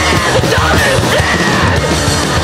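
Loud hardcore punk band recording: guitar, bass and drums playing under a yelled lead vocal.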